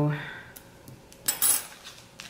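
Metal-tipped sticker tweezers set down on a granite countertop, giving a short double clink about a second and a half in.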